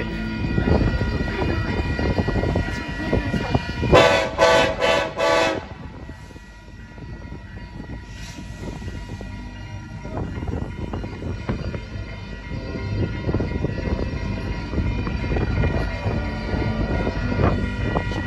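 Union Pacific freight train approaching in emergency braking, a steady low rumble that dips and then builds again as it nears. About four seconds in, the locomotive horn sounds a quick run of about four short blasts.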